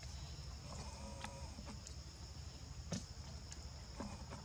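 Quiet outdoor ambience: a steady high-pitched insect drone over a low rumble, with a short faint animal call about a second in and a single sharp click near three seconds.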